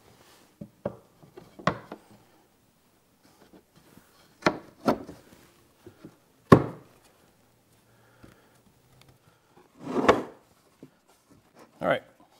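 Glued wooden tray parts being fitted and pressed together by hand: a series of irregular wooden knocks and thuds with rubbing between them. The loudest is a single knock about six and a half seconds in, with a longer cluster of knocks around ten seconds.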